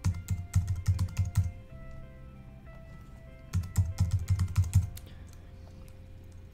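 Computer keyboard typing in two quick runs of about eight keystrokes each, one over the first second and a half and one starting about three and a half seconds in: an eight-character password typed, then typed again to confirm it.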